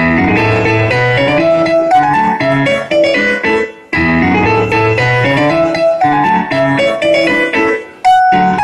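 Piano music, a quick run of notes that starts abruptly, breaks off briefly about four seconds in, and drops away again just before the end.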